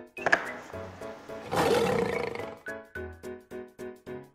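A recorded lion roar, about a second long, starting about a second and a half in, over a bouncy plucked melody in the background music. A short knock comes near the start, like a wooden puzzle piece set down on the board.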